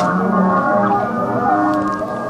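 Live experimental folk music: layered sustained drone tones from a keyboard, with wordless voices whose pitches slide up and down over them.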